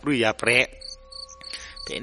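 Crickets chirping steadily in the background, with a man's narrating voice briefly at the start. During the pause in the voice, the chirping is heard with a faint steady tone under it.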